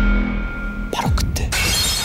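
Horror sound design over dark background music: a low drone, then about a second in a steep falling sweep and a few sharp hits, breaking into a loud noisy crash about halfway through.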